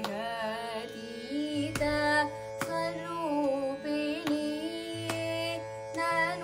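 A girl's voice singing a Carnatic song in raga Mayamalavagowla, the melody sliding and ornamented, over a steady drone and percussion strokes roughly once a second.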